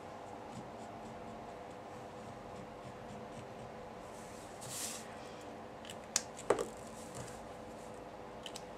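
Faint strokes of a brush-tip marker colouring a rubber stamp, over a steady low room hum. Two sharp clicks come a little after six seconds, as the wooden stamp block and the marker are set down and handled.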